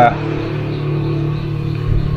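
A steady low hum made of a few sustained tones, with a brief low thud near the end.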